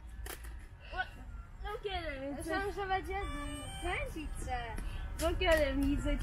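High-pitched children's voices calling out, indistinct, through most of the stretch.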